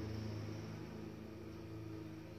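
A steady low hum made of several pitches over a faint hiss, easing slightly in loudness.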